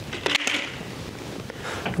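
Hand shears cutting through vinyl J-channel soffit trim: a few short sharp snips, the strongest about half a second in.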